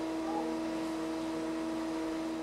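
Hydraulics of a Sarcos humanoid robot running as it moves its arms: a steady hum with a constant mid-pitched whine over an even hiss.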